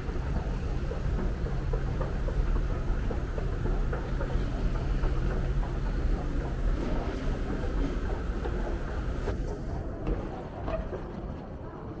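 Escalator running with a steady low hum and rumble, which drops off about ten seconds in.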